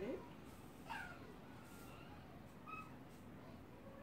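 An animal's short high call that falls in pitch about a second in, and a brief higher chirp near three seconds, over quiet room tone.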